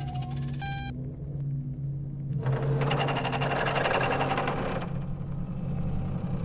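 Electronic sci-fi computer sound effects: a few pitched beeps that stop about a second in, over a steady low hum, then a rapid electronic buzzing from about two and a half to five seconds in.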